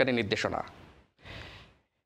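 A newsreader's voice reading in Bengali trails off at the end of a phrase, then a short audible in-breath comes about a second in.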